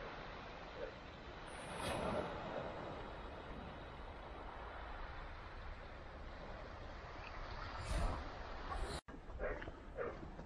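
Small waves washing in over a shingle beach: a steady hiss, with a louder surge about two seconds in and another near the end, broken off by a sudden short gap shortly before the end.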